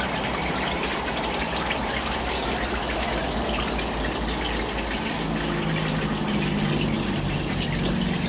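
Flushing oil splashing and gushing steadily through a 33 kV tap-changer tank, raining down from above and draining through a hole in the tank floor. A low steady hum joins about five seconds in.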